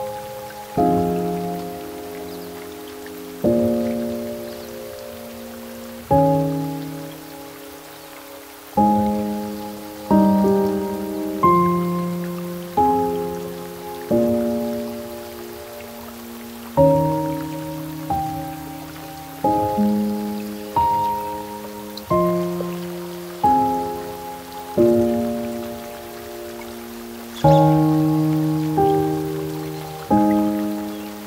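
Slow, soft solo piano playing gentle chords and a simple melody, each struck note left to fade before the next, about one every second or two. A steady layer of rain sound runs beneath it.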